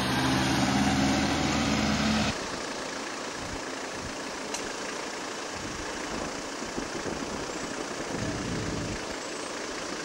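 Road vehicles passing close by with a loud, low heavy-engine note, from the lorry carrying a steel boat hull, for about two seconds. Then an abrupt change to the steadier, quieter road and engine noise of a car driving along behind it.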